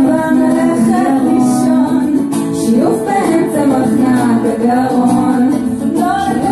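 Live band playing: a woman sings a melody over electric guitar and violin.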